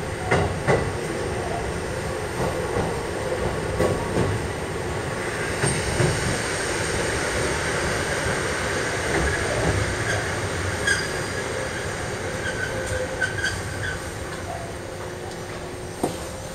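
Kotoden Nagao Line electric train rolling slowly into the station, heard from the front cab: steady running noise with clacks from the wheels over rail joints and points and a brief high wheel squeal about two-thirds of the way through. It gets a little quieter near the end as the train eases to a stop close to the waiting train.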